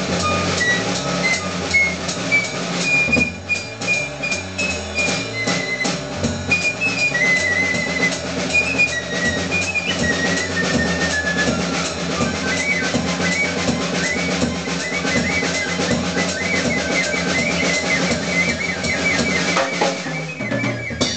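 Live free-jazz trio: a piccolo plays a line of short, high notes over busy drum kit playing with snare, bass drum and cymbals, and a double bass moving in the low end. In the second half the piccolo switches to quick repeated figures.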